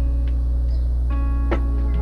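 Background music of plucked string notes that ring out and fade, over a steady low hum.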